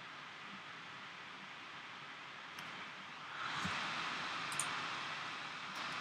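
Computer cooling fans running as a steady hiss, growing louder from about three seconds in, with a couple of faint clicks.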